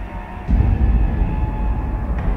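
Cinematic sound design in a TV show's opening theme: a deep, steady rumble hits about half a second in and holds.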